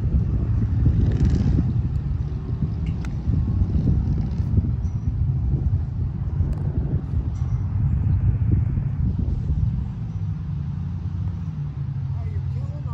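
Steady low rumbling noise with a few faint clicks.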